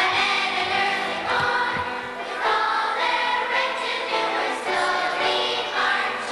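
Children's choir singing, holding notes that change every half second or so.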